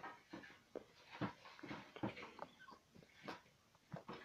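A few sharp knocks and clatter of tools and wood being handled at a workbench, the sander silent, with short faint whimper-like vocal sounds between the knocks.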